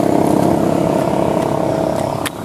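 A passing road vehicle's engine, a steady hum that fades slowly as it moves away.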